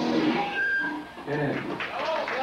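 Crowd voices shouting and calling out as a song cuts off, with a short high whistle-like cry about half a second in.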